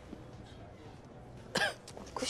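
Quiet room tone, then a single short cough from a person about one and a half seconds in.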